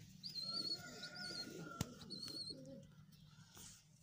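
A pigeon cooing low, with three short high warbling chirps from a bird over it and one sharp click near the middle.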